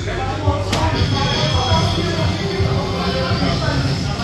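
A dart strikes an electronic dartboard with one sharp click about a second in, then the DARTSLIVE3 machine plays its electronic game-finish effects over arcade background music.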